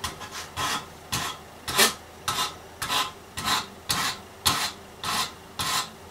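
Wooden axe handle being shaved down with a cheese-grater-style wood rasp, in regular push strokes of about two a second, each a short scraping rasp. The top of the handle is being trimmed to fit the eye of the axe head.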